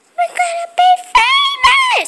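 A child's high voice singing or calling out a few held notes: two short ones, then two longer, higher ones. A couple of brief knocks fall between them.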